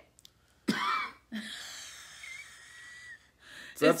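A person taking one long, deep sniff through the nose of a scented wax tester, about two seconds, with a faint whistle, just after a short vocal sound.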